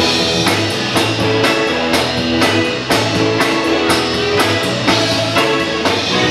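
Live band playing a soul number without vocals: a drum kit keeps a steady beat of about two strokes a second under electric guitar and low sustained bass notes.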